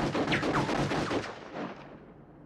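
Rapid gunfire from a pistol, a dense volley of shots with falling whines. It starts suddenly and echoes in a large concrete hall, dying away over the last half second or so.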